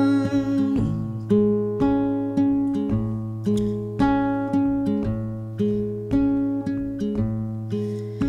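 Flamenco guitar playing a picked instrumental passage: single plucked notes about two a second, each left ringing, over a steady low bass note.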